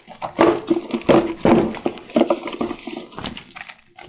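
Cardboard gift box and packaging being handled, with knocks and rubbing, together with a short steady whining tone that comes and goes about four times.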